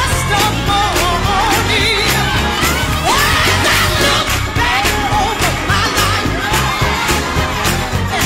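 Recorded gospel song with singing over a steady drum beat and bass line.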